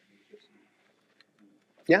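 Near silence: faint room tone in a small room, broken by a man's voice starting just before the end.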